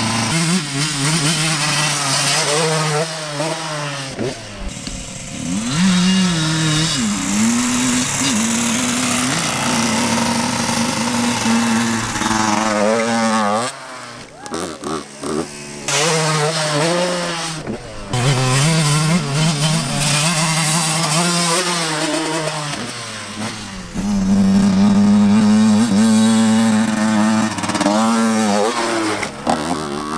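Dirt bike engine running under throttle as it is ridden. The pitch holds steady for a few seconds at a time, then drops off and climbs again several times as the rider eases off and reopens the throttle. The sound dips briefly a few times around the middle.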